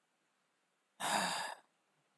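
A man's short, breathy groan-sigh of exasperation, about a second in and lasting about half a second, after dead silence.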